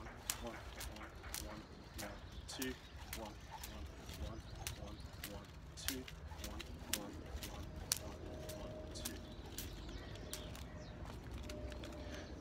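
Skipping rope swung in side swings, its cable ticking against the pavement at each pass, about twice a second, over a low outdoor rumble.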